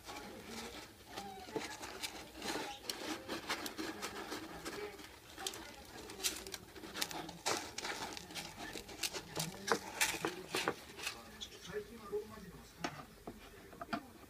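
Kitten scratching and digging in cat litter inside a plastic litter box: irregular gritty scrapes and clicks, busiest in the middle of the stretch.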